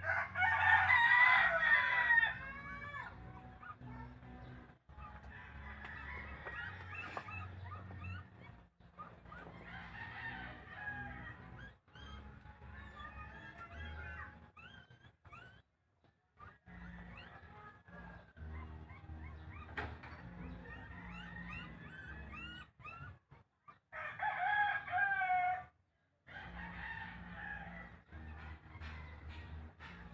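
A rooster crowing twice, once at the start and again about 24 seconds in, each crow lasting about two seconds. Between the crows come fainter short chirping calls over a low steady hum.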